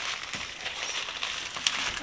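Thin plastic wrapping crinkling and rustling as hands turn and pick at a tightly taped package, with a few small crackles.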